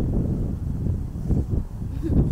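Low, uneven rumbling outdoor noise with no clear single sound standing out.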